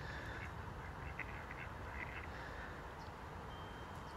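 Faint mallard quacking from ducks on the water, a few short calls between about one and two and a half seconds in, over a low steady outdoor background.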